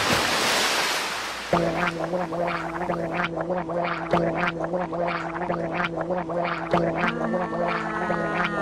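A cartoon splash of liquid sloshing up out of a tub. It is followed by music holding a steady low chord, with short bubbly pops and gurgles over it, two or three a second.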